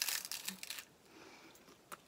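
A crispy seaweed-roll snack crunching as it is bitten into: a dense crackle for most of the first second, then dying away.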